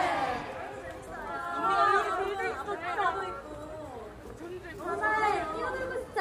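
Women's voices talking and chattering, several voices in turn, with no music.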